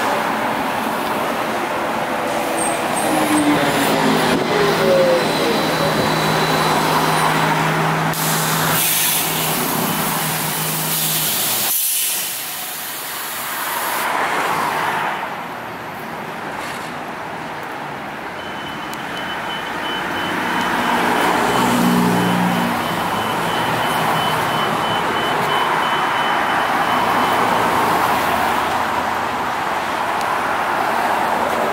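Street traffic as a New Flyer E40LFR electric trolleybus comes up the road among passing cars. After a sudden cut about twelve seconds in, the trolleybus stands at a curb stop with traffic passing, and a steady high whine holds through much of the second half.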